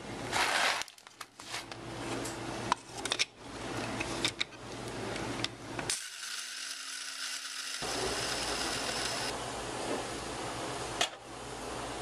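Coffee beans rattling and the lid clicking on an electric blade coffee grinder, then the grinder running steadily from about halfway through, with one click near the end.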